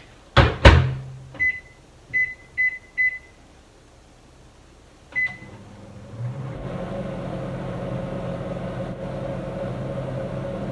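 Microwave oven being shut and started: two loud clacks of the door, four short keypad beeps and a fifth about two seconds later. About six and a half seconds in the oven starts running with a steady hum.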